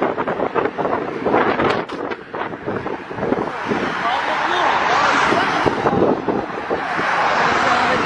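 Indistinct voices of people close by over a rushing noise that swells about halfway through.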